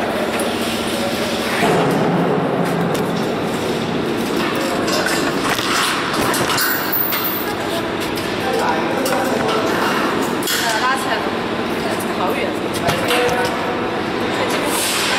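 Steel trampoline springs clinking against the metal frame as they are hooked on between frame and jumping mat, with scattered sharp metallic clicks, over voices in a large echoing hall.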